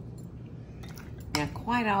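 A few light clinks of a metal spoon against the glass mixing bowl and serving plate as deviled-egg filling is spooned into the egg whites. A woman starts talking about a second and a half in.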